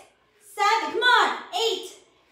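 A woman's voice in short, separate bursts, counting repetitions aloud.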